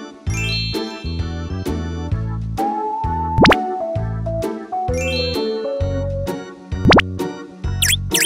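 Cheerful children's background music with a regular bouncy beat and chiming notes, cut twice by a quick rising whistle sound effect.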